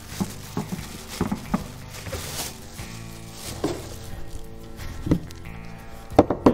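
Background music over the crinkle of a plastic bag and a few light knocks as a cordless oscillating multi-tool is unwrapped and handled on a wooden workbench.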